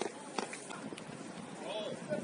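Players' voices calling across an open football pitch, heard at a distance, with a few short sharp knocks.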